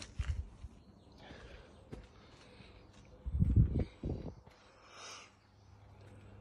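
Handling noise on a phone's microphone: a short run of low bumps near the start and a louder cluster about three and a half seconds in, with soft rustling as the phone moves among wet loquat leaves.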